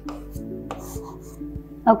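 Felt-tip marker writing and drawing on a whiteboard: a few short, light strokes and scrapes. Soft background music with sustained notes plays under it.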